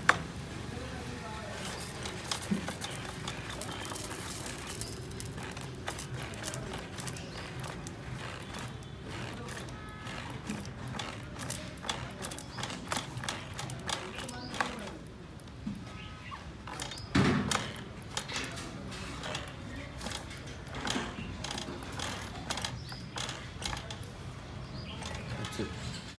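Torpedo mini gas fogger running in cooling mode, a steady rushing noise from its burner with irregular clicks and knocks from its hand pump as water is pumped through to cool it. One louder knock comes past the middle.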